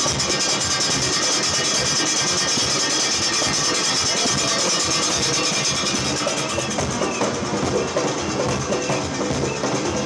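Junkanoo band playing: hand-held cowbells clanging and goatskin drums beating in a continuous, dense rhythm. The bright high ringing of the cowbells thins out about seven seconds in.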